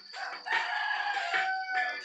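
A rooster crowing, one long call that rises slightly and then slowly falls in pitch, over music playing through a small loudspeaker driven by a TDA7056 mini amplifier.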